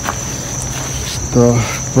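Steady, high-pitched insect song from an outdoor garden, holding one even tone throughout; a man speaks a word or two about one and a half seconds in.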